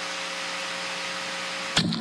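A steady hiss with a faint low hum beneath it, cut off abruptly near the end.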